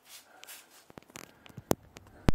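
Rustling and scraping handling noise as a handheld camera is moved about against clothing and rock, with a few clicks and one sharp, loud click near the end.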